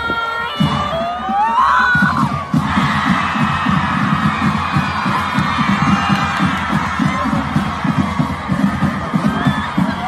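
Stadium crowd noise over music, with a quick, steady low beat that fills in about two and a half seconds in.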